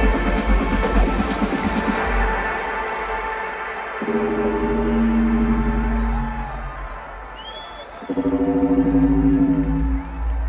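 Electronic dance music from a live DJ set over a festival sound system. About two seconds in, the drums and high end drop out into a breakdown of held synth chords over deep bass, with new chords coming in about four and eight seconds in.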